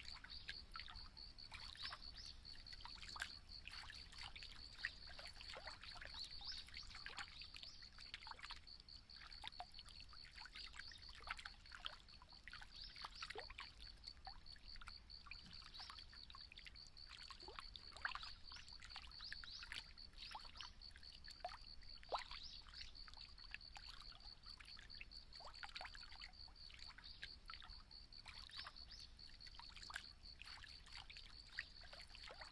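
Faint trickling, chirping sounds: many quick falling chirps, irregularly spaced, over a steady high-pitched tone.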